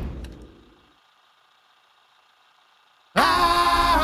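Orchestral score dies away with a single click, leaving near silence for about two seconds. Just after three seconds a pop song cuts in from a cassette tape deck, its pitch sweeping up at the very start.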